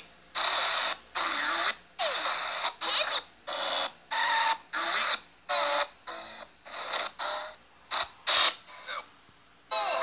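A rapid stutter-edit of short, cut-up bursts of hissy cartoon sound effects, about one and a half a second, each chopped off into a brief silence. The bursts grow shorter and quicker toward the end, before a short gap.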